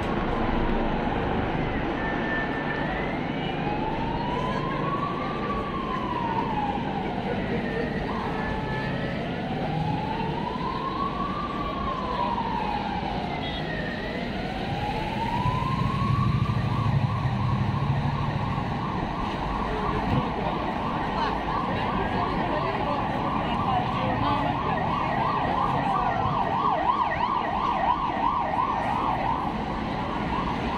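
Emergency vehicle siren in a slow rising and falling wail, one cycle about every six seconds, switching about halfway through to a fast warbling yelp, over city traffic.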